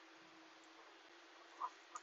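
Near silence: a faint steady background hiss, with one brief faint sound near the end.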